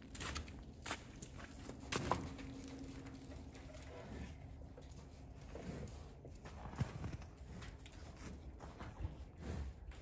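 Bison moving about close by at a steel corral panel: scattered footfalls and a few sharp knocks over a low rumble.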